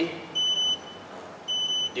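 An electronic beeper sounding a high, single-pitched beep about once a second: two beeps, each a little under half a second long.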